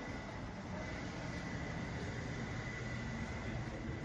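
Steady city street background noise, a low traffic-like rumble with a thin, steady high tone running through it.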